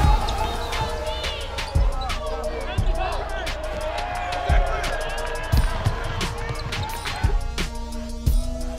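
A basketball dribbled on a hardwood court, with a handful of heavy bounces spaced irregularly, and sneakers squeaking on the floor as players run. Music plays underneath.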